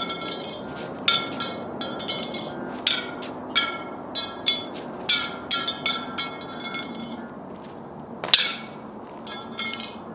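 A titanium Apple Card repeatedly striking the asphalt: about fifteen sharp metallic clinks at irregular intervals, each ringing briefly at the same pitch, as the card is deliberately knocked about on the road.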